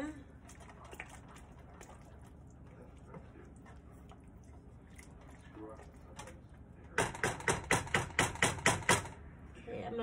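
Wooden spoon stirring thick, cheesy pasta in a skillet: faint soft stirring sounds at first, then, a few seconds from the end, about two seconds of quick, loud, evenly spaced strokes of the spoon against the pan, some ten in a row.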